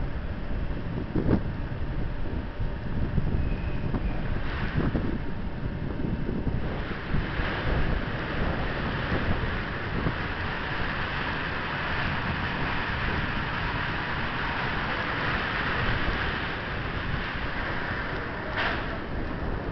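Red SBB Re 4/4 II electric locomotive standing at the platform, its steady rushing fan noise growing louder about six and a half seconds in. Wind buffets the microphone, and two brief knocks come in the first five seconds.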